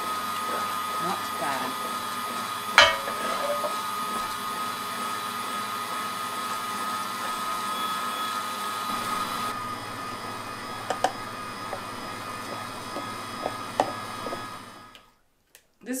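Electric meat grinder with a strainer attachment running steadily, pressing cooked rose hips and tomatoes to separate the pulp from the seeds. A sharp knock about three seconds in, a few faint clicks later, and the motor cuts off about a second before the end.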